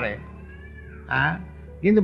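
A man's recorded lecture voice trailing off, then a pause over steady background hum, broken about a second in by one short vocal sound.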